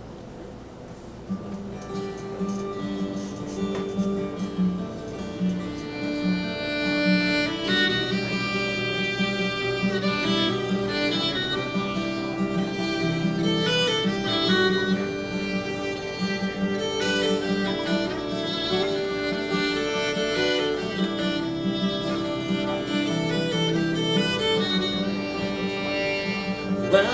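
Fiddle and acoustic guitar playing the instrumental introduction to an Americana song. The guitar comes in about a second and a half in, and the fiddle joins about five or six seconds in, carrying the melody over the strummed chords.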